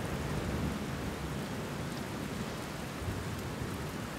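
Steady hiss of rain with low rumbling underneath.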